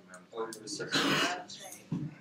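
Low background chatter of students talking to each other, with someone clearing their throat about a second in, the loudest sound here.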